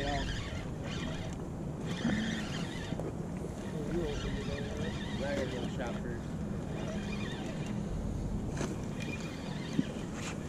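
Spinning reel being cranked steadily, with faint voices in the background and a single click near the end.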